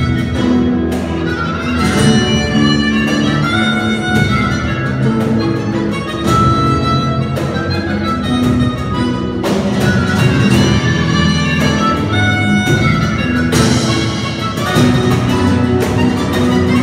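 Flamenco-jazz band playing fandangos: a chromatic-sounding harmonica carries long held melody notes over flamenco guitar, electric bass and percussion hits.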